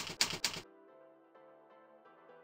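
Typewriter keystroke sound effect: a quick run of clacks, about eight a second, that stops abruptly about two-thirds of a second in. Soft, sustained music notes follow.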